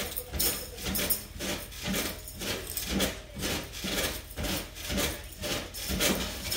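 Mini trampoline being bounced on: a steady rhythm of creaks and soft thumps, about two to three bounces a second.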